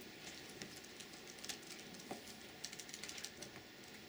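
Faint, irregular clicking of laptop keys being pressed, the taps coming closer together in the second half.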